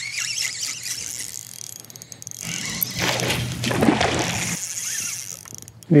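Spinning reel's drag buzzing as a hooked smallmouth bass pulls line off against the bent rod, louder about midway, over a steady low hum.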